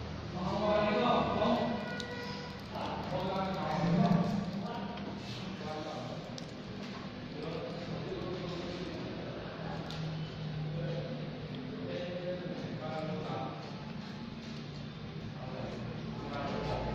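People talking: a voice is louder over the first few seconds, then fainter talk carries on.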